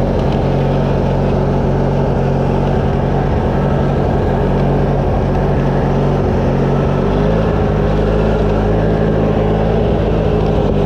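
Craftsman riding lawn tractor's engine running steadily while the tractor is driven; the engine note shifts slightly about seven seconds in.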